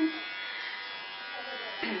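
Electric hair clippers buzzing steadily while shaving a woman's long hair off her head.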